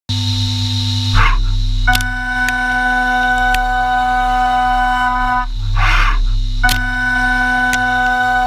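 Haas VF2 SS spindle turning a 1/2-inch three-flute carbide end mill at 15,000 rpm while roughing 6061 aluminium, making a loud, steady, high-pitched cutting whine. Twice, about a second in and again near six seconds, the whine breaks for a brief rushing noise before the cut picks up again.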